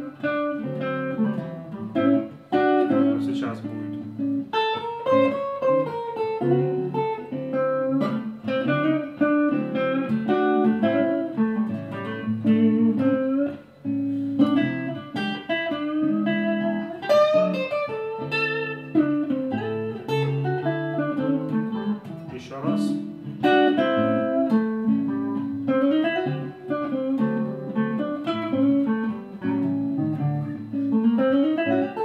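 Hollow-body archtop electric guitar playing a blues in A, with chords under quick single-note runs. The runs use the half-step/whole-step diminished scale over the A chord to build tension in the move to the IV chord.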